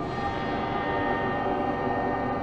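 Steady drone of many sustained tones stacked together, holding level without change: the synthesized 'frequency' sound bed of an affirmation recording.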